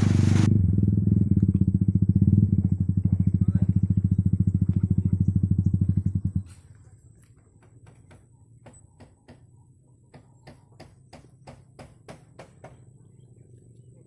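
An engine running steadily with a rapid even pulse, cutting off abruptly about six seconds in, after which only faint scattered clicks remain.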